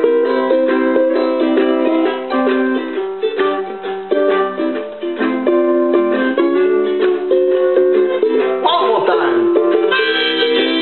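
Ukulele strummed in a steady rhythm while a harmonica on a neck rack plays sustained chords and melody over it, an instrumental break with no singing.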